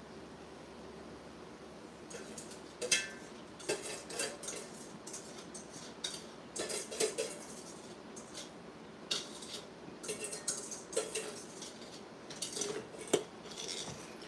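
A utensil scraping and clinking against a copper-coloured metal mixing bowl as thick lemon-bar filling is poured and scraped out of it into a glass baking dish. After a quiet first couple of seconds come irregular short scrapes and knocks, the sharpest clink about three seconds in.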